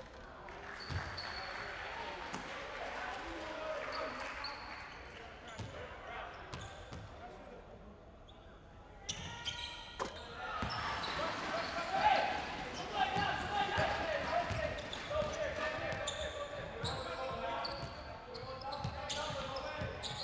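Basketball arena sound: players' and spectators' voices echoing in a large hall, with a basketball bouncing on a hardwood court. A quieter stretch in the middle gives way to busier voices and repeated knocks from about nine seconds in.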